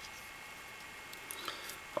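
Faint steady hiss with a few small, quiet clicks about a second and a half in, from a spring-assisted folding knife being handled as its blade is released to fold.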